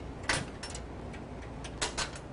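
A handful of sharp metallic clicks and knocks as latches and fittings on RAM missile shipping canisters are worked by hand. The loudest comes a little after the start and another near the end, over a steady low rumble.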